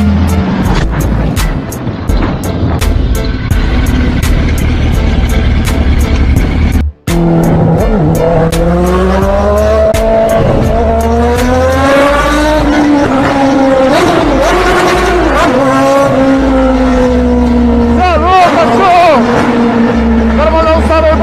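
Motorcycle engine running and revving, its pitch rising and falling with the throttle, heard from the rider's seat. A sudden break about seven seconds in, after which the engine note climbs and dips repeatedly.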